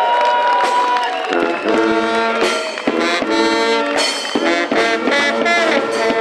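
Carnival brass band playing, with trumpets and trombones. A single held note opens it, and the full band comes in with chords about a second in.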